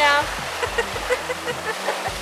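Steady wind and water rush aboard a sailing yacht, over the low steady drone of its engine.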